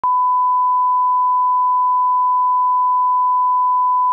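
A 1 kHz line-up test tone: one steady, pure beep that holds unchanged at a constant level.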